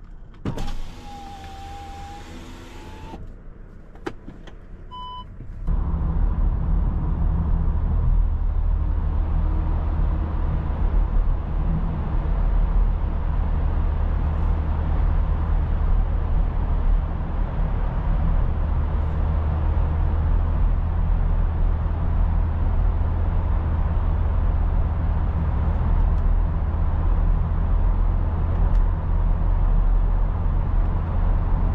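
An electric power window motor runs for about two and a half seconds, followed by a click and a short electronic beep. From about six seconds in, the steady in-cabin rumble of the Seat Ateca's 1.5-litre four-cylinder petrol engine and tyres at cruising speed in a tunnel takes over.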